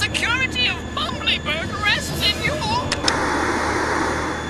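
A run of quick, high chirping vocal sounds, then a steady television static hiss that comes on suddenly about three seconds in.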